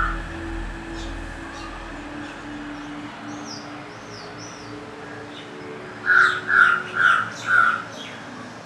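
A crow cawing four times in quick succession near the end, over a faint steady low tone. A small bird whistles a few wavy notes a little before the caws.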